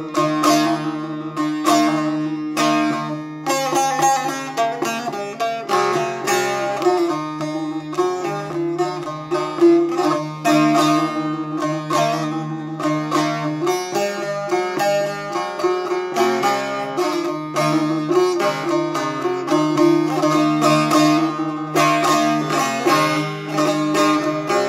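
Long-necked bağlama (saz) played solo in quick plucked strokes, an instrumental passage of a Turkish folk tune between sung verses, with steady low notes ringing under the melody.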